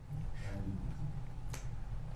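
Quiet courtroom room tone with a faint voice about half a second in, then a single sharp click about one and a half seconds in.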